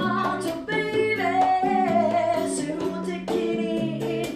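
A woman singing into a handheld microphone with a guitar accompanying her. She holds one long note in the middle.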